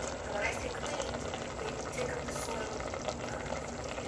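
A large piece of meat sizzling and bubbling in hot fat and juices in a stainless steel pot, a steady frying hiss with small crackles.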